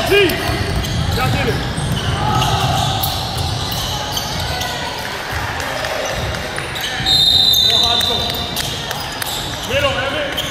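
Basketball game sounds in a gym: a ball bouncing on the hardwood court and players' shouts echoing in the hall. About seven seconds in, a referee's whistle is blown once for about a second.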